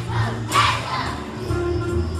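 A large group of young children singing together over instrumental accompaniment, with a loud burst of voices about half a second in.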